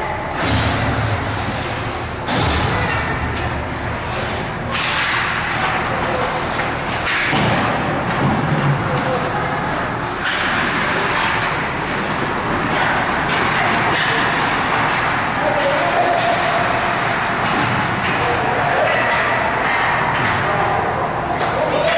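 Spectators' voices echoing in an ice hockey arena during a game, with occasional knocks and thuds of sticks, puck and boards.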